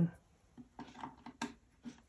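Light clicks and rubbing of power cables being handled and plugged in, about five short clicks spread through, the sharpest about halfway.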